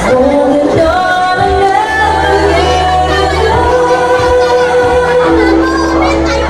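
A woman singing live into a handheld microphone over backing music, amplified through a PA in a large hall, with long held notes.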